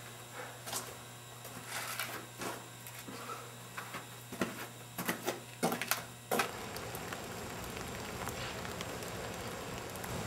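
Scattered footsteps and small knocks over a low steady hum. About six seconds in the hum stops and a soft, even hiss takes over.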